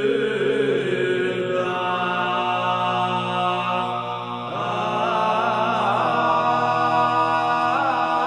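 Three-voice medieval organum sung by unaccompanied male voices: a low voice holds one long note while the upper voices sing flowing lines above it. The upper voices move to new notes a couple of times.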